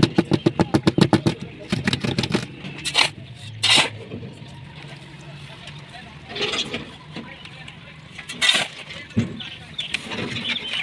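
A fast run of knocks in the first two seconds, then a shovel scraping into a dry sand-and-cement pile and tipping the mix onto a steel tile mould, a few separate scrapes.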